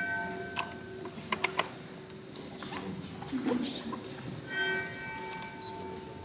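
A church bell tolling slowly: one stroke rings on from just before the start and fades within about a second, and the next stroke comes about four and a half seconds in and keeps humming. A few sharp clicks come about a second in.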